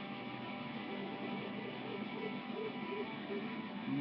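Guitar playing on its own in a short break between sung lines, with a run of short notes in the middle.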